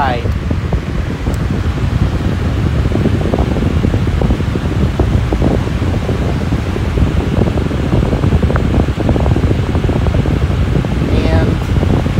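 Mainstays 20-inch box fan running on its high setting: a steady, loud rush of moving air, heaviest in a low rumble.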